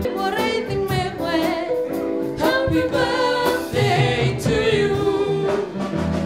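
Live music from an electric keyboard and a trumpet, with a wavering melody line and singing over sustained chords.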